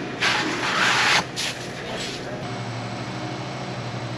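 Dark roasted grain poured and scattered onto a wet mash, a loud rushing hiss lasting about a second. After it, the steady hum of the brewhouse pumps and equipment.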